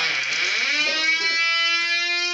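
Live improvised experimental music: one sustained tone that dips low at the start, then glides slowly upward and settles into a steady held note.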